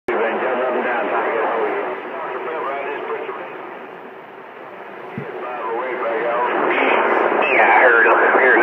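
CB radio on channel 28 receiving men's voice transmissions through its speaker, the thin, narrow-band voices too garbled to make out. The signal fades down about halfway and comes back up stronger toward the end.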